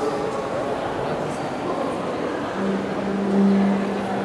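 A cello holding one low note that begins about two and a half seconds in and swells slightly before the end, over a steady background murmur.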